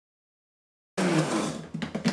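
Dead silence, then about a second in the Ninja Foodi blender's motor cuts in abruptly, churning thick almond butter on a high blend cycle. Near the end it breaks into a rapid flutter of about ten beats a second as the cycle finishes.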